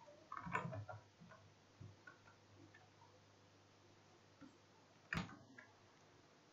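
Faint, scattered clicks from computer keyboard typing, a short run of keystrokes about half a second in, and one sharper single click about five seconds in, in an otherwise quiet room.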